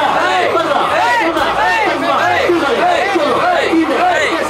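A group of men chanting a host-club call together, many voices overlapping in a quick, steady rhythm, part of a drawn-out "arigatou gozaimasu" (thank you very much).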